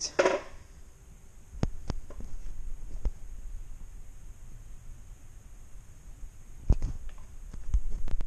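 A few short, scattered thumps and knocks over a low steady background hum: bare feet stepping onto a digital bathroom scale and the camera being handled, with the loudest knocks near the end.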